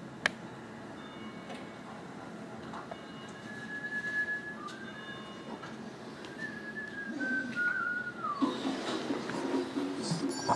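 Whistling sound effects from a dog-food TV advert, made to catch a pet's attention, heard through the television speaker. There are a few short whistled notes, and the last, longer one slides down in pitch. A sharp click comes just after the start.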